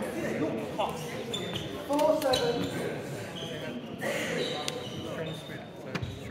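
A celluloid-type table tennis ball clicking a few times as it bounces and is struck on bat and table, under indistinct voices in the hall.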